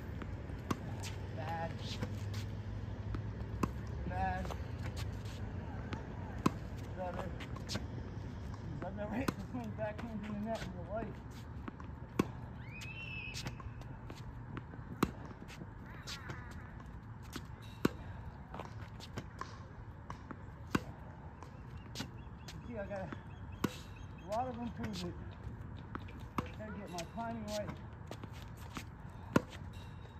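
Tennis balls struck with a racket, a sharp pock about every three seconds as a ball machine feeds them, with lighter ball bounces between the hits.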